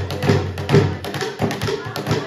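Drum struck in a quick, steady rhythm, about four beats a second, playing dance music.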